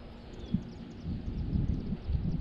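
Outdoor ambience dominated by low wind rumble on the microphone, with a single soft thump about half a second in and faint light ticking.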